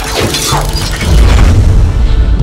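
Glass-shattering sound effect over music with a heavy bass; the high crackle of the breaking glass fades over the first second and a half while the bass grows.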